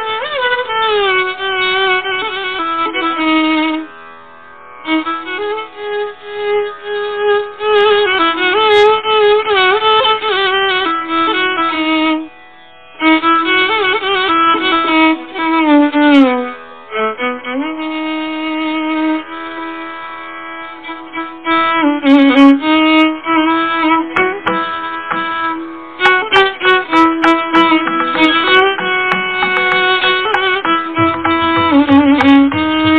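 Carnatic violin playing a devaranama in raga Kapi, its melody full of sliding, oscillating ornaments, with two brief pauses between phrases early on. Mridangam strokes accompany it and grow more frequent in the second half.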